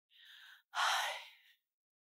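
A person takes a short breath in and then lets out a louder, longer sigh that fades away.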